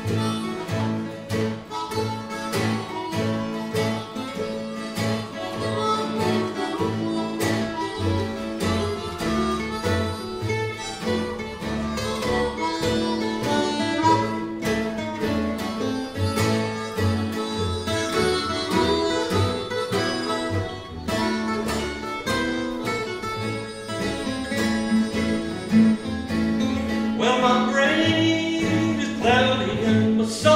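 Acoustic string band playing a Western swing tune: upright bass pulsing out a steady beat under strummed and picked acoustic guitars and mandolin, with harmonica on the lead.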